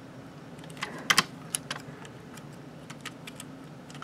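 Small clicks and taps of a transforming toy figure's plastic parts being handled and pushed into place, with a quick pair of sharper clicks about a second in.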